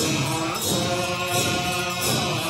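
Many voices chant a melodic Tibetan Buddhist liturgy in unison, holding notes and stepping between pitches, while massed double-headed Chöd hand drums (damaru) rattle in repeated rolls.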